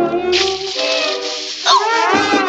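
Cartoon sizzling hiss sound effect as a red-hot spot burns under the mouse's feet, over orchestral music. Near the end comes a sudden sharp cry with swooping pitch as the mouse leaps up.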